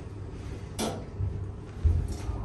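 Schindler 330A hydraulic elevator car running with a steady low hum, a sharp click a little under a second in, and dull low thumps, the loudest near the end.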